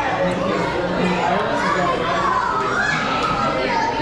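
Indistinct overlapping chatter of children and adults talking.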